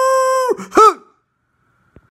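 A man's voice holding one long, steady intoned note that ends about half a second in, followed by a short vocal cry that rises and falls in pitch, after which the sound cuts off.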